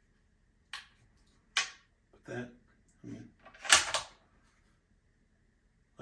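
A man's breath and short wordless vocal sounds, a few separate bursts with the loudest, a breathy one, nearly four seconds in.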